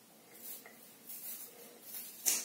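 Scissors cutting through a thick banded ponytail of hair in three faint short snips, a little under a second apart.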